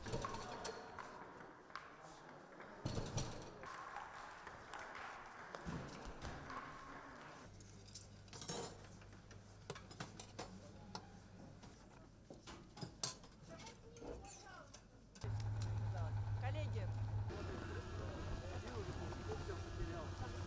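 Canteen sounds: metal serving utensils and dishes clinking against steel food trays, with indistinct voices in the background. A steady low hum grows louder about three-quarters of the way through.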